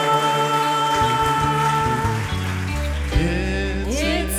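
Live gospel choir and band playing a slow ballad, holding long steady notes; near the end a rising slide leads into a new phrase.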